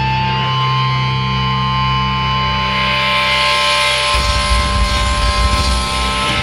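Live band's amplified electric guitars sustain a droning chord with high ringing feedback tones. About four seconds in, a fast low rumble of bass and drums comes in.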